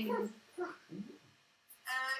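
A voice trailing off, then two short, quiet vocal sounds, the second rising in pitch, and a voice starting again near the end.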